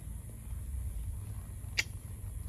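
Steady low outdoor rumble, with a single sharp click near the end.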